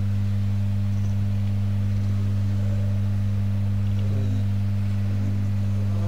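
Steady electrical hum from a public-address sound system: two flat low tones, about an octave apart, with no change in pitch or level.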